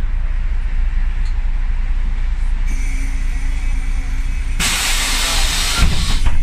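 Ikarus 280 articulated bus's diesel engine rumbling low from inside the cabin; a steady hum with a higher whine sets in about three seconds in. About four and a half seconds in comes a loud hiss of compressed air from the bus's pneumatic system, lasting over a second.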